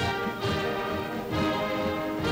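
Orchestral film score with brass playing held chords that change twice.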